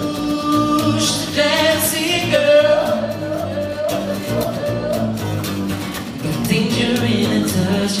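Male vocals singing with strummed acoustic guitar: long held notes and melodic runs over a steady strumming rhythm.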